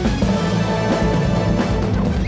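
Loud closing theme music of a TV news programme, with a steady beat.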